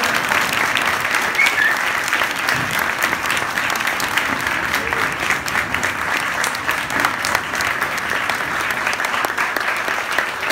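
Audience applauding: many people clapping steadily and densely.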